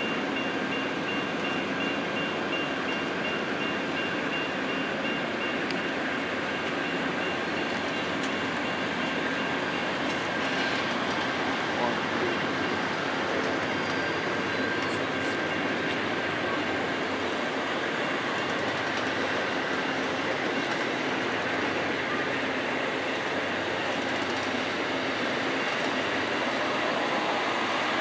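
Amtrak Superliner bilevel passenger cars rolling past as the train pulls out of the station, giving a steady rumble of wheels on rail that holds level throughout.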